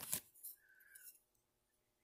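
A few faint clicks and light knocks of handling, mostly in the first half second, then near silence.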